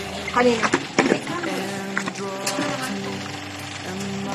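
Packaged items and cardboard being handled and rustled in a box, with scattered short clicks and crinkles, over quiet background music with held notes.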